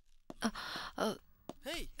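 A person's breathy sigh, then two short wordless vocal sounds, each rising and falling in pitch, with a sharp footstep click or two on a hard floor between them.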